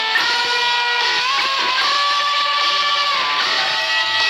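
Electric guitar playing a lead line high on the neck, picked notes with a string bend rising about a second in and then held for about two seconds before moving on.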